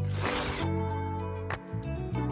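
A short swish sound effect, then background music with sustained tones and a brief click about one and a half seconds in.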